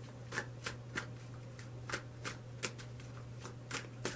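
A deck of tarot cards being shuffled by hand: a run of short, crisp card flicks, about three a second.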